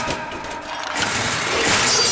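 Cartoon magic sound effect: a noisy whoosh that swells toward the end, with a shimmering high ring coming in near the end.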